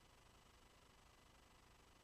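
Near silence: only faint steady hiss.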